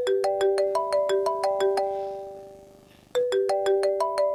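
Mobile phone ringtone: a short chiming melody of quick notes that plays, fades away, and starts over about three seconds in, an incoming call ringing.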